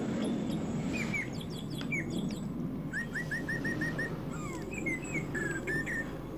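Small birds chirping in the background, with scattered short notes and a quick run of about seven identical chirps a little after the middle, over a steady low background noise.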